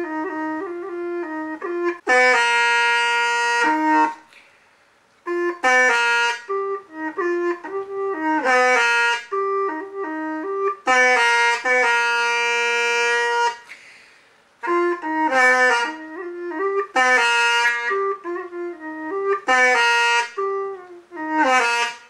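Long Hmong bamboo pipe (raj) playing a slow solo melody. The tune comes in phrases that step between held notes, each ending on a long sustained note, with short breath pauses about four seconds in and near fourteen seconds.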